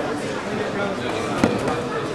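Steady voices and shouting of people in a sports hall during grappling matches, with one sharp knock about one and a half seconds in.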